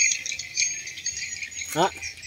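Insects chirping in a steady, high-pitched chorus.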